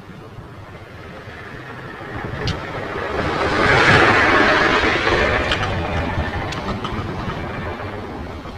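A vehicle passing close by: its noise swells to a peak about four seconds in and then slowly fades.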